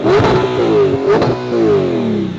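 Audi R8 engine being revved hard while parked: repeated throttle blips, the pitch climbing and dropping, with a sharp crack a little past a second in, then sliding back down near the end.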